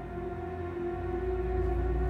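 Dark background music of sustained, held drone tones over a low rumble.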